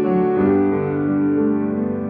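Upright piano played with both hands: a slow piece in held, ringing chords, with a new chord struck about half a second in.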